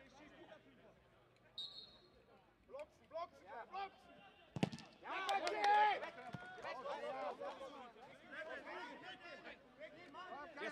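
Footballers shouting to each other on the pitch, with a sharp thud of a ball being kicked about halfway through, followed by the loudest burst of shouting. A short high whistle sounds just under two seconds in.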